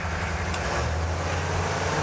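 Humvee's 6.5-litre V8 diesel pulling at full throttle, heard from inside the cab as a steady low drone.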